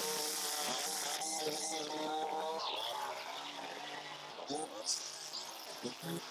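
Gas string trimmer's small engine buzzing at high throttle as the spinning line cuts grass along a sidewalk edge, with a few sharp ticks near the end.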